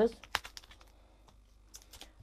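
Light clicks and crinkles of plastic-sleeved embossing folders being handled and set down on a cutting mat, sharpest about a third of a second in, then a few faint ticks.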